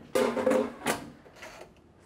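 An air fryer basket being slid into the air fryer: a scraping slide, then a sharp knock just under a second in.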